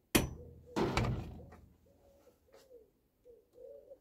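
Two light hammer taps, about two-thirds of a second apart, driving a brass rod through a small pin held in a vise. The second rings on for about half a second. These are the last taps seating a home-made carburettor float needle flange to flange.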